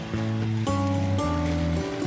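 Background music of sustained chords that change about every half second, over a steady hiss.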